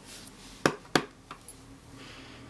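Two sharp hard taps about a third of a second apart, followed by two faint ticks, as a rubber stamp mounted on a clear acrylic block is handled and knocked against the work surface.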